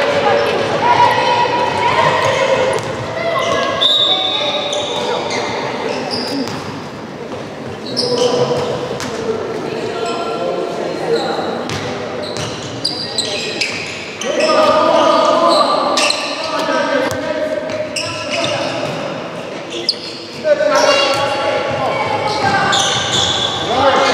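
A handball bouncing on a wooden sports-hall floor, with shouting from players and coaches throughout, echoing in a large hall.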